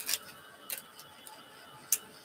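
Three sharp clicks over a faint steady background, the loudest just before the end.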